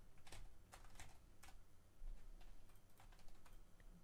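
Faint computer keyboard typing: a few scattered keystrokes and clicks as a short word is entered.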